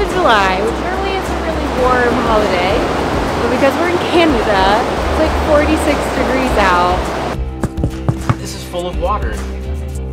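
A woman's voice, lively and sweeping high in pitch, over a steady rush of water and background music; about seven seconds in, the voice and water stop and the music carries on alone.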